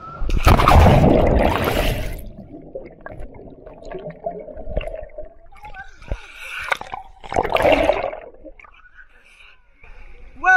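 A person jumping into a cenote pool: a loud splash just after the start as he hits the water, then gurgling and sloshing water around an action camera at the surface, with two more splashing bursts in the second half as he swims.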